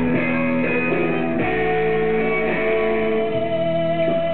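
Live band music led by electric guitar, with held, ringing notes.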